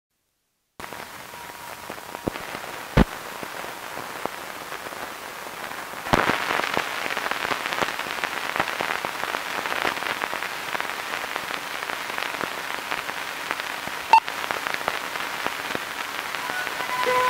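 Hiss, crackle and scattered pops from the optical soundtrack of a worn 16 mm film running through its leader, the crackle growing denser about six seconds in. A short beep with a pop a couple of seconds before the end, the countdown leader's sync pop.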